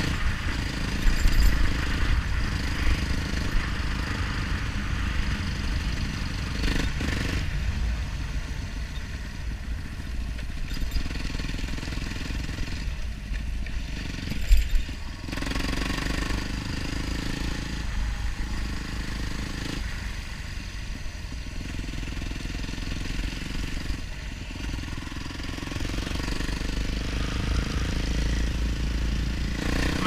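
A Yamaha dirt bike's engine running under way, its note shifting as the throttle is worked, over a heavy low rumble of wind on the camera microphone. There is a brief louder thump about halfway through.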